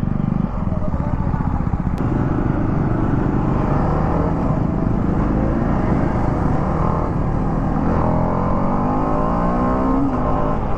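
TVS Apache RR 310's single-cylinder engine pulling under hard acceleration, its note climbing steadily in pitch from a few seconds in, over constant wind rush.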